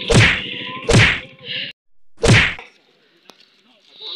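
Three loud whacks of punches and kicks landing, the first at the start, the next about a second later and the last over a second after that. They have the sharp, uniform sound of dubbed fight sound effects.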